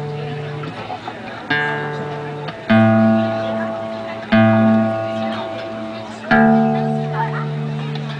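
Acoustic guitar being tuned: single low strings plucked about four times, a second or two apart, each left to ring out while a tuning peg is turned. The player is retuning because the guitar sounded off.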